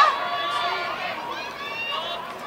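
Spectators' voices calling out across an athletics track: a loud shout breaks off right at the start, then fainter calls carry on.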